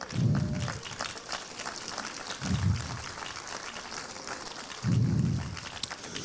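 Church congregation applauding, with three brief louder low sounds coming through near the start, about halfway and near the end.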